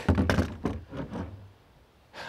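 A few handling knocks and thunks from a polymer AK magazine and rifle, loudest at the start and trailing off into lighter clicks within about a second and a half.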